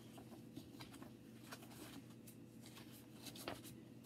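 Faint rustling and scattered soft ticks of a picture book's pages being turned, over near-silent room tone.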